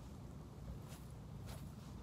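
Faint scraping and rustling of a skinning knife slicing through kangaroo hide and fur, with two soft scrapes near the middle and about one and a half seconds in, over a low steady rumble.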